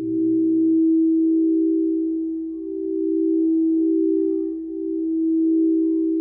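432 Hz-tuned crystal singing bowls rubbed with mallets, holding one steady ringing tone that swells and eases in slow waves every two seconds or so.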